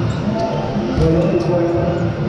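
Dodgeballs hitting the floor of an indoor court during play, a few sharp strokes, under players' voices calling out.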